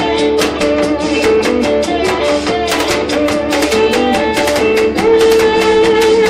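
Live blues band in an instrumental break: a V-shaped electric guitar played with a slide takes the lead, its held notes sliding between pitches over a steady drum beat.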